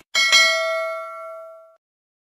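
A short click, then a notification-bell ding sound effect: a bright, pure ring struck twice in quick succession near the start, fading over about a second and a half.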